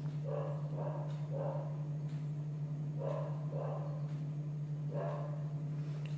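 A dog barking faintly: six short barks, a group of three, then two, then one, over a steady low hum.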